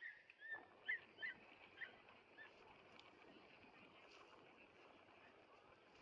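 Birds chirping faintly: a quick run of short, high chirps over the first two and a half seconds, then only a quiet steady hiss of outdoor background.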